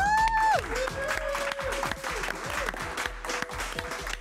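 Applause with dance music carrying on underneath. A long note rises and holds near the start.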